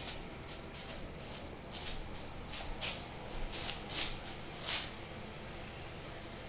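Border collie puppies chewing raw chicken necks and drumsticks: a run of short, irregular crunching and smacking noises, loudest about four seconds in and again just before five.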